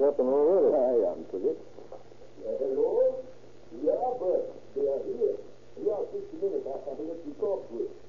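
Speech only: voices talking in an old radio drama recording, over a steady low hum.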